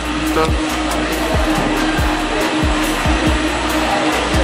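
Steady rushing din of a busy indoor food court, with music and its bass beat running underneath.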